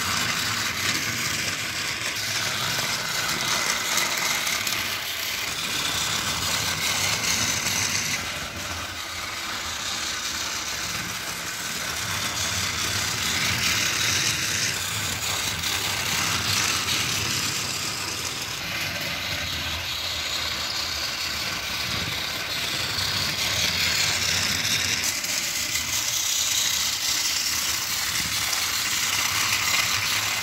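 Battery-powered Tomy motorised toy engine (Lady) running on plastic track, its small electric motor and gears whirring under the rattle of its wheels and the trucks it pulls. The noise rises and falls every few seconds.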